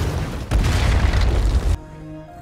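Film fight sound effects: loud, deep crashing and booming from the brawl, with a fresh heavy impact about half a second in, cutting off suddenly near the end to leave held notes of the score.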